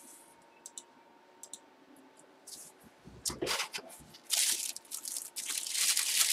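Packaging being handled and torn open around an autographed baseball: a few faint clicks, then rustling, crackling bursts from about three seconds in, louder over the last two seconds.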